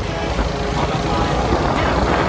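Background music coming in over a moving motorcycle, with wind noise on the microphone and the bike's engine underneath; a laugh at the very start.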